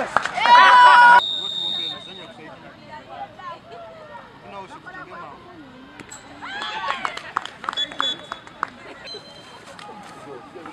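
Voices of players on an outdoor sports ground: a loud, drawn-out shout in the first second, then faint scattered calls and chatter, a little louder about seven seconds in.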